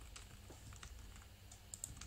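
Faint computer keyboard keystrokes: a few scattered clicks, then a quick cluster of them near the end.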